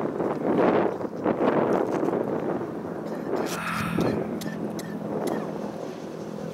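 Wind buffeting the microphone, a loud uneven rumble. A brief distant voice comes about three and a half seconds in, and a low steady hum follows it.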